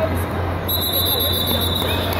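A steady, high-pitched electronic beep from a wrestling match timer, starting less than a second in and running on, the signal that time has run out in the match. It sounds over the general hubbub of the tournament hall.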